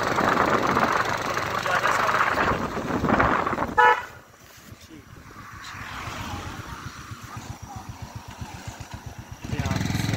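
Motorcycle riding on a road with wind rushing over the microphone; a vehicle horn beeps briefly about four seconds in. The rushing then drops away, leaving the engine's rapid, even pulsing, and comes back loud near the end.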